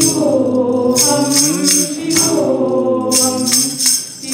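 Group singing a Hindu devotional hymn to Shiva, with a woman's voice leading and hand-percussion jingles struck in time, roughly twice a second.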